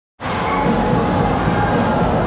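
Loud, dense street-crowd noise: many voices talking and calling at once, blending into a steady din.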